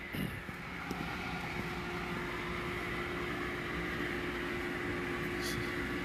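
Steady mechanical drone with a single held hum running under it, rising slightly in level, with one small tick about a second in.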